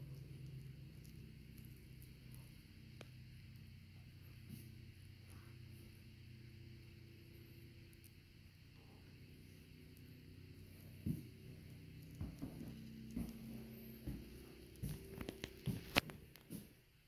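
Faint room tone with a steady low hum. From about eleven seconds in come a few soft, irregular footsteps on the floor.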